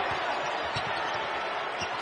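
Arena crowd noise from a basketball game, with a basketball thumping a few times on the hardwood court as it is dribbled.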